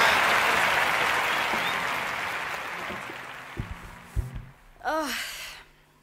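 Brief applause that fades out over about four seconds, followed by a few low knocks and a short vocal sound near the end.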